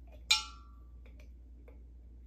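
A glass gallon jug clinks once, sharply, with a brief glassy ring as something knocks its neck, followed by a few faint small clicks as the mouth of the jug is handled.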